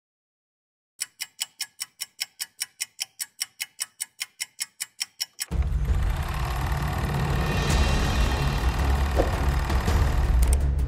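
After a second of silence, an even ticking at about four to five ticks a second, then about halfway in, intro music with a strong bass comes in and carries on.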